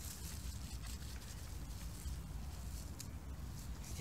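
Quiet outdoor background between commands: a steady low rumble with faint hiss and a few light ticks, and no clear single sound standing out.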